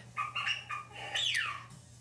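Duck calls: a few short, pitched calls, then one call that falls steeply in pitch about halfway through.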